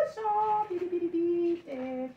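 A woman's voice singing slow held notes that step down in pitch across the two seconds.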